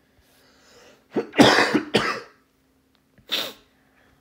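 A person coughing: a quick run of three or four coughs about a second in, then a single cough near the end.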